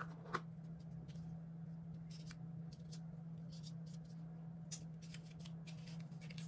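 Faint handling sounds as a coiled charging cable is lifted out of its cardboard packaging tray and unwrapped: one sharp click just after the start, then scattered light paper rustles and ticks, over a steady low hum.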